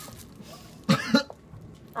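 A person coughing twice in quick succession about a second in.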